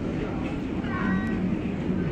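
A child's short, high-pitched vocal sound, slightly rising in pitch, about a second in, over a steady low background hum.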